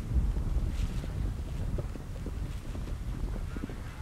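Wind rumbling on the microphone, loudest in the first second, over the dull hoofbeats of horses galloping on turf after clearing a fence.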